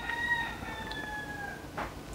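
A faint single animal call with a clear pitch, drawn out for about two seconds. It swoops up at the start, then holds and slides slowly downward before fading out.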